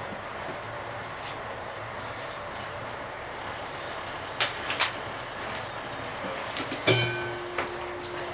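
Inside a standing VR Dm7 diesel railbus: a steady rumble, two sharp clicks about halfway through, then near the end a loud clack followed by a steady hum.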